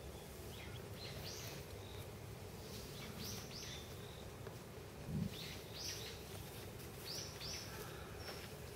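Birds calling faintly in short, high, falling chirps, mostly in pairs about every two seconds, over a low outdoor background hum. A soft low thump about five seconds in.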